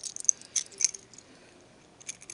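Small metal keychain clicking and jingling as it is handled in the fingers: a quick run of light clicks over about the first second.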